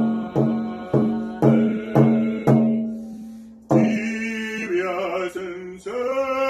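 Rawhide hand drum struck with a beater about twice a second under a held singing tone. The drumbeats stop about two and a half seconds in and the sound dies away, then singing picks up again near four seconds.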